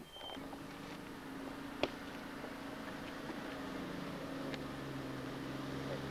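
Low, steady engine drone of an approaching four-wheel-drive tour truck, slowly growing louder, with a deeper note joining in about halfway through.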